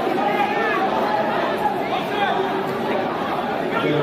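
Commotion of a packed crowd of lawmakers jostling in a large chamber: many voices talking and calling out over one another.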